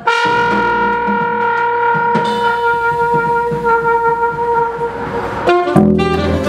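Live jazz: a trumpet holds one long note for about five seconds, with a second horn joining about two seconds in, over drums and double bass. Near the end the held note breaks off and the band moves into quicker notes.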